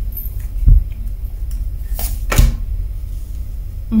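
Tarot cards handled on a wooden table: a card pulled from the deck and laid down, giving two soft knocks, the second after a brief papery rasp of card sliding. A steady low hum runs underneath.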